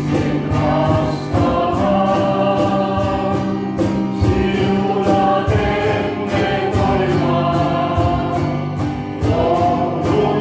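Small mixed choir of men and women singing a gospel hymn in held, sustained notes, accompanied by a strummed guitar keeping a steady beat of about three strokes a second.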